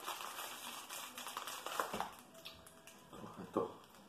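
Clear plastic packaging wrap crinkling and rustling as it is handled on a rubber-covered chainsaw handlebar, with scattered clicks and a sharp knock near the end.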